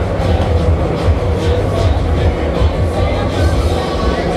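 Loud, bass-heavy fairground ride music over the steady low rumble of a Bakker Polyp octopus ride running, its arms swinging the gondolas round.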